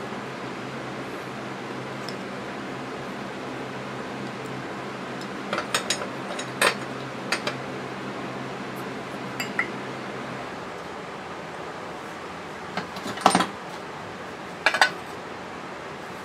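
Cast aluminum lawn mower engine parts clinking and clattering as they are handled and set down, in a few scattered clinks with the loudest near the end. A steady low hum runs under them and stops about two-thirds of the way in.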